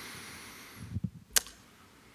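Quiet handling noise at a lectern: a faint breath-like hiss, then a soft low thump about a second in and one sharp click just after.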